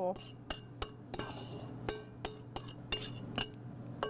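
A spatula scraping and knocking against a stainless steel mixing bowl as cake batter is scraped out into a pie dish: a dozen or so irregular clinks and taps with a short metallic ring.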